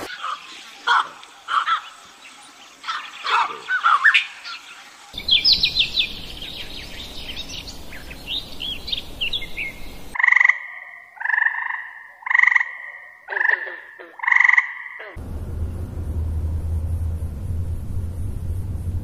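A run of animal calls: gelada monkeys calling with rising and falling cries, then quick high chirps, then five loud two-note calls about a second apart. A steady low hum follows near the end.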